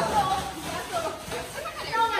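Indistinct chatter of several young people talking and calling out over one another, no words clear.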